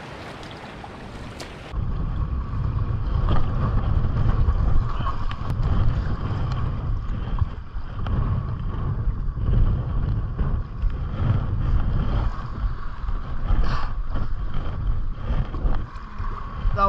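Wind rumbling on the microphone, with water splashing around an inflatable stand-up paddle board as it is paddled across a river current. It starts about two seconds in, after a quieter opening.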